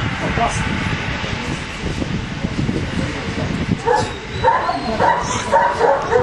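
A German shepherd dog gives short high yips and whines, starting about four seconds in.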